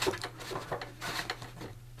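Plastic sliding side panel of a 1970s Mattel Big Jim Sports Camper toy being slid open along its track by hand, giving a run of light scrapes and small clicks.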